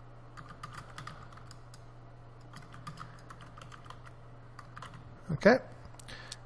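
Computer keyboard being typed on, a quick run of keystroke clicks for about four seconds, then a short spoken "Okay" near the end.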